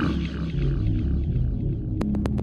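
Opening of a dark electronic track: a loud, deep bass drone with a processed, voice-like texture above it.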